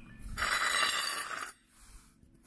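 A steel cultivator shovel scraping across a concrete floor as it is slid into place, one hissing scrape lasting just over a second.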